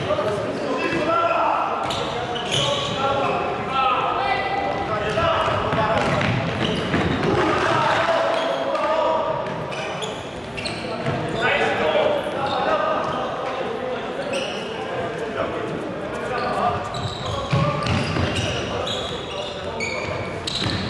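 Futsal game in a large sports hall: players' shouts and calls echo while the ball thuds off feet and the wooden floor at irregular moments throughout.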